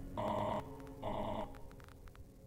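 Two short buzzy pitched tones from the track's outro, each about half a second long and about a second apart, followed by a few faint clicks.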